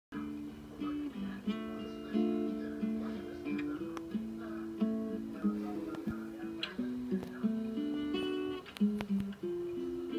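Guitar playing a slow tune of plucked chords and single notes, each held for about half a second to a second.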